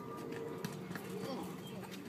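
Faint distant voices with a scatter of light knocks and taps.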